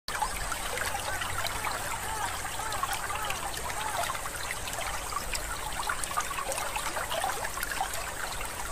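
Running water, trickling and bubbling steadily.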